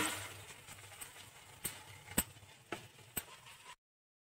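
Faint sizzling of grated tomato, onion and green chillies frying in oil in a nonstick kadhai, with a sharp knock at the start and a few light clicks against the pan. The sound cuts out abruptly shortly before the end.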